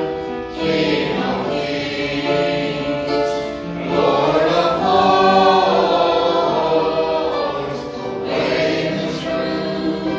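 A church congregation singing a hymn together, in long held notes that move from one pitch to the next.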